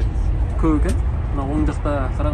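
Steady low rumble of a moving bus, engine and road noise heard from inside the cabin, with a voice talking over it.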